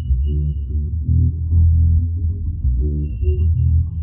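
An electric bass guitar, isolated from the full band mix, plays a riff of sustained low notes that change in a repeating pattern. A faint, thin high tone bleeds through briefly at the start and again near the end.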